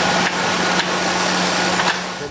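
Racing bike's rear wheel spinning on a stationary turbo trainer as the rider pedals a warm-up: a loud, steady whirring with a low hum and a few light clicks.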